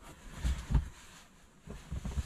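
Rummaging in a cardboard box: a few soft thumps and a knock about half a second in, then faint rustling.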